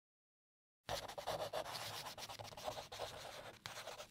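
Pen-on-paper writing sound effect: a run of quick scratchy strokes that starts abruptly about a second in.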